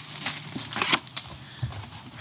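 Cardboard box and its packaging being handled, with irregular crinkling and crackling clicks.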